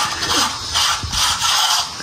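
Clothes being hand-washed in a plastic basin of soapy water: fabric squeezed and rubbed in the suds with wet squelching and sloshing, in repeated strokes.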